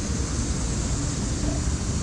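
Steady outdoor noise with a strong low rumble that flutters, and faint distant voices in the background.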